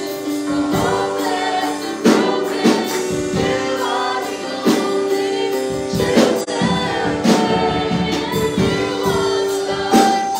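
Live worship song: a woman sings lead through a handheld microphone and PA, backed by a band with a drum kit keeping a steady beat.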